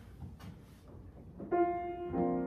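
Faint shuffling and a soft click as someone sits down at a grand piano, then about one and a half seconds in a chord is struck on the piano and rings on, the opening of a slow jazz ballad.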